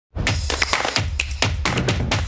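Short intro logo jingle: music with a quick run of sharp percussive hits over a steady deep bass, starting just after the beginning.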